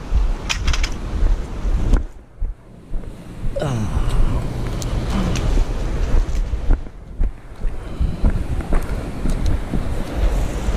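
Wind buffeting the microphone over the steady rush of fast river water below a dam, with a brief lull about two seconds in.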